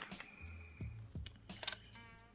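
A few sharp plastic clicks as a hinged clear acrylic watch case is pried open, the sharpest near the end.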